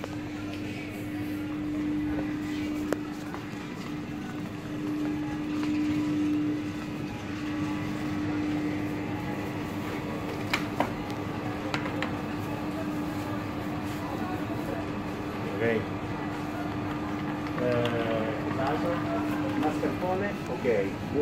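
Steady low hum of supermarket refrigerated display cases, with a few sharp clicks around ten to twelve seconds in and faint voices near the end.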